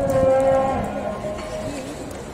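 A cow mooing: one long, loud moo lasting about a second and a half.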